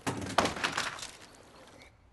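A heap of guns clattering onto a wooden floor: a sudden dense run of metal knocks that dies away over about a second and a half.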